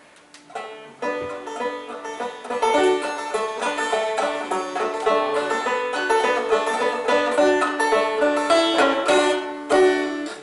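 An old-time string band of banjo, fiddle and guitars playing a tune together, with the banjo prominent. The playing builds over the first couple of seconds and stops with a final note near the end.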